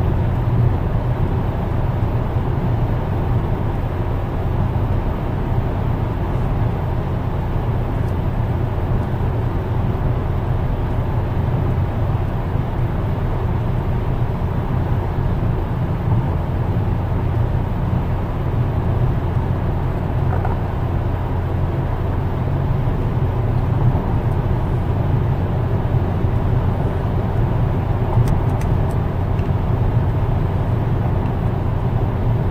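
Car driving at steady speed, heard from inside the cabin: a constant low rumble of road and engine noise with no change in pace.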